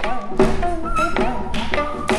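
Korean traditional instrumental music: a wavering melody line with a slow vibrato over several sharp percussion strokes.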